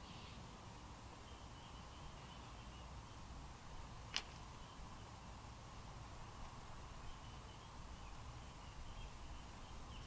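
Quiet outdoor background with a faint, intermittent high chirping and one sharp click about four seconds in.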